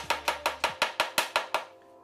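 Quick, even taps on the edge of an upturned heart-shaped chocolate mould, about five or six a second, stopping a little past halfway through: knocking the excess tempered chocolate out so that only a thin hollow shell is left in the mould.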